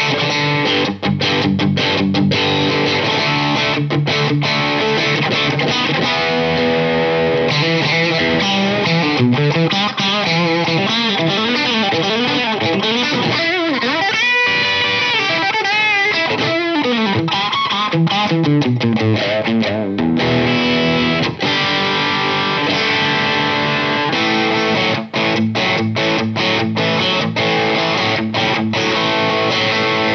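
Fender American Vintage II 1961 Stratocaster on its bridge pickup, played through a Blackstar St. James 6L6 amp with a bit of grit: ringing overdriven chords, then bent lead lines with vibrato in the middle, then short, chopped rhythm chords near the end. The bridge pickup sounds not too brittle.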